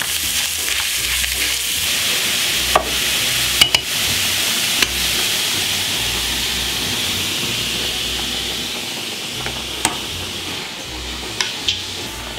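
Minced meat sizzling steadily as it fries in a hot stainless steel pan while being stirred and broken up, easing off slightly near the end. A few sharp clicks stand out over the sizzle.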